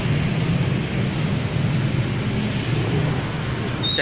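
Steady low rumble of street traffic with motorbike engines running, loud and continuous with no distinct events.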